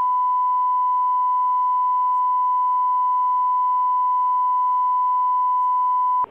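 Steady broadcast line-up tone: one pure, fairly high pitch held unbroken at constant loudness. It is the reference tone of a holding loop that marks the feed as off-air during a break.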